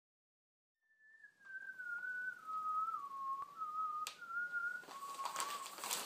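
A slow, wandering tune whistled on one thin tone, starting about a second in, sliding down in pitch and then stepping back up, with a faint click near the end.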